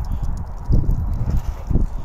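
Wind buffeting the phone's microphone: irregular low rumbles and thumps that swell several times.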